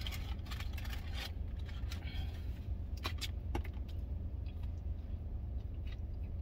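Steady low hum of a parked vehicle's engine and air conditioning running, with a few faint clicks and rustles as food is handled.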